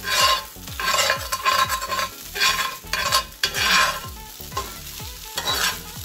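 A metal spatula scraping and turning fried rice in a cast-iron skillet, in repeated strokes about one or two a second, with the rice sizzling over medium heat. The strokes thin out in the last couple of seconds.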